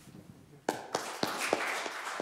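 Audience clapping at the end of a talk: a few separate claps about two-thirds of a second in, filling out into applause.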